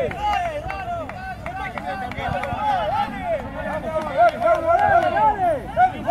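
Several voices calling and talking over one another at once, none of them clear, from players and onlookers at a small-sided football match, with a few short knocks among them.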